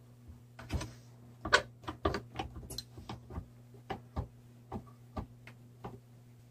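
An irregular run of small sharp clicks and knocks from hands handling a bar clamp and plastic resin cups on a workbench, the loudest knock about one and a half seconds in. A steady low hum runs underneath.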